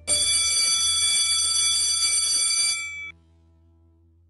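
Electric bell ringing steadily for about three seconds, then cutting off suddenly.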